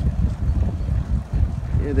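Wind buffeting the microphone of a camera carried on a moving bicycle: a loud, uneven low rumble.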